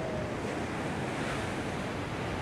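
Steady sea surf washing against a rocky shore, with wind buffeting the microphone.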